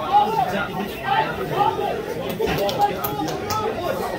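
Several people talking over one another close to the microphone, with a laugh at the start: spectator chatter.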